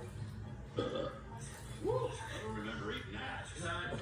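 Animated film voices heard through a television speaker: two short, loud vocal sounds about one and two seconds in, then a groan and talk.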